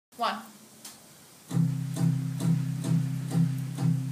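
Guitar accompaniment comes in about one and a half seconds in: one chord strummed in a steady beat, about two strokes a second, as the introduction to the song.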